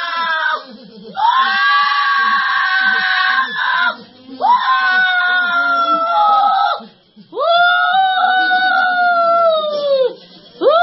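A person screaming in three long, high-pitched wails, each lasting about two and a half seconds, during an exorcism-style deliverance prayer. Fainter voices murmur underneath.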